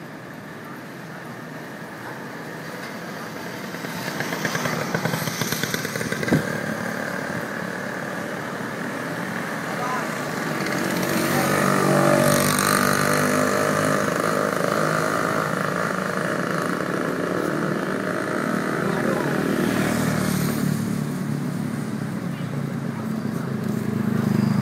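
Street traffic with motorcycle engines running close by. It grows louder from about ten seconds in and stays that way for roughly ten seconds. A single sharp knock comes about six seconds in.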